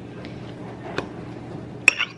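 A metal fork tapping against a small glass bowl as it stabs at a strawberry: a couple of light clicks, then one sharper clink with a brief ring near the end.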